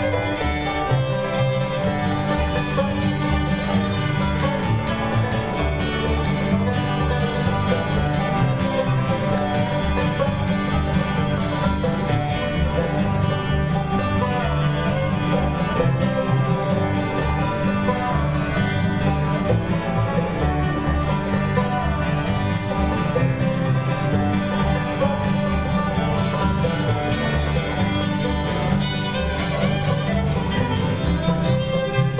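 Bluegrass band playing a banjo instrumental: five-string banjo rolls over acoustic guitars, fiddle and a steady upright bass.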